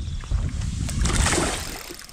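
Water splashing at the surface about a second in as a hooked bass thrashes on the line, over a low rumble of wind on the microphone.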